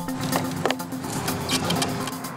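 Electronic background music with a few sharp clicks from a road bike's pedal and handlebar controls.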